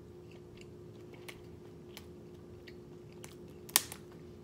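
Close-up chewing of a ham and cheese quesadilla: faint, scattered wet mouth clicks over a steady low hum. One sharp, loud click comes near the end.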